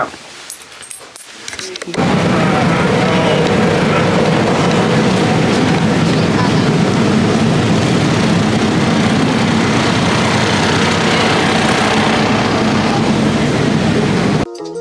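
Busy city street noise: dense crowd chatter mixed with traffic, starting suddenly about two seconds in after a short, quieter stretch of a few clicks.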